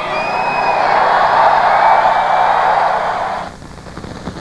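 Large arena crowd applauding and cheering, with a whistle in the first second; the noise dies away about three and a half seconds in.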